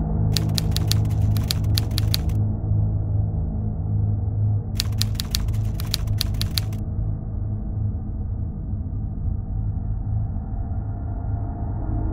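Ambient background music with a low steady drone, overlaid twice by a typewriter sound effect: two runs of rapid key clicks, each about two seconds long, the first just after the start and the second about five seconds in.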